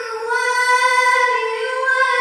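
A boy's voice reciting the Qur'an in the melodic tilawah style into a microphone, holding long, drawn-out high notes with a slight waver and a short change of note near the start.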